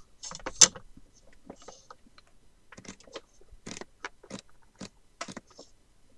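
Irregular light clicks and taps of a pencil and hands working a stack of folded paper signatures on a desk, marking the sewing-hole positions along the spine edge. One sharper click comes about half a second in.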